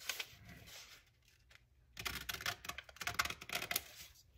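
Scissors snipping through a sheet of freezer paper faced with a paper napkin: a run of short, quick snips in the second half, after a near-silent pause.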